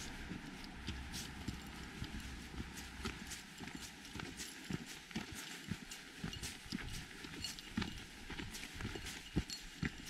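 A hiker's footsteps on a dirt and gravel trail: steady steps, each a crunchy scuff of boots on grit and small stones, about one a second.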